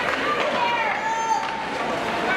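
High-pitched shouting voices echoing in an ice hockey arena: drawn-out calls that slide in pitch, over a steady noise from play on the ice.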